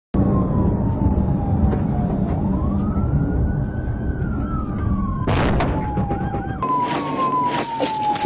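Police car siren wailing in slow falling and rising sweeps, breaking into a few quick yelps a little after six seconds, over the patrol car's engine and road rumble. A sharp knock cuts in about five seconds in.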